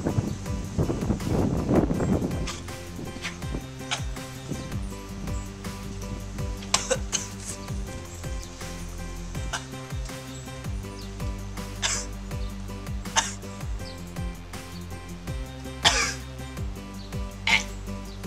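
Hip-hop instrumental background music with a steady beat, over a person coughing on a mouthful of ground cinnamon. There is a heavy burst of coughing in the first two seconds, then a few shorter coughs.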